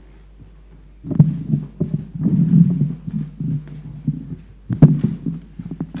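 Handling noise from a floor-stand microphone being adjusted, heard through the PA: irregular low thumps, rubbing and knocks starting about a second in, with one sharp knock near the end. A low mains hum sits under it throughout.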